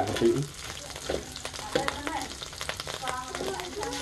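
A red paste frying in oil in a steel wok, sizzling as a metal spatula stirs it, with repeated scraping and clicking of the spatula against the pan.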